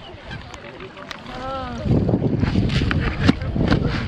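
A flock of mute swans crowding and feeding on scattered grain. A short call rises and falls in pitch a little over a second in. About halfway through a louder, busy stretch of scuffling and splashing begins.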